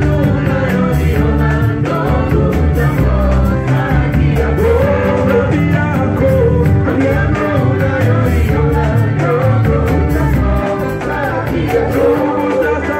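A live band playing a Swahili gospel song: electric guitar, keyboard and drum kit, with a group of voices singing together over a steady beat.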